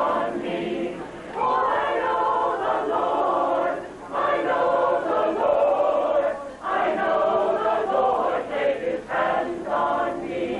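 Mixed choir of men and women singing together in sustained phrases, with brief breaks between phrases about one, four and six and a half seconds in.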